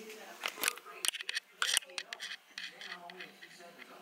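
Several sharp clicks from a handheld camera, a quick run of them in the first two seconds and a few more later, with faint voices underneath.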